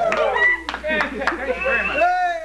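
A voice sliding down in pitch over sharp handclaps.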